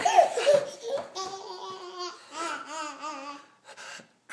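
A toddler laughing, high-pitched, in a run of bursts with short pauses between, loudest in the first second.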